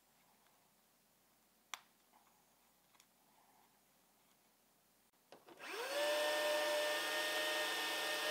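A Tyco HO slot car's small electric motor starts up about five and a half seconds in, its whine sweeping quickly up in pitch and then running steadily, its armature freshly oiled and its shoes and commutator just cleaned. Before that there is near silence with a single light click.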